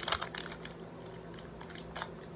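Crackling, crinkling clicks of a plastic cigarillo pouch being shaken and handled, in a burst at the start, then only a few faint ticks.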